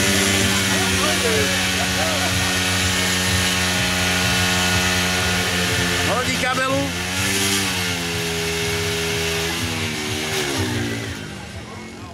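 Small moped engine idling steadily, its pitch lifting briefly twice in the second half, with short bits of voices over it.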